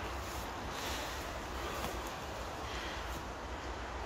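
Steady outdoor noise of wind and the flowing river, with wind rumbling low on the phone's microphone.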